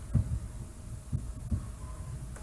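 Three soft low thumps, one near the start, one about a second in and one at about one and a half seconds, over a steady low hum.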